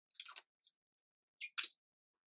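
Chewing and biting into crispy Popeyes fried chicken: a few short, separate mouth noises with silence between, the loudest pair about one and a half seconds in.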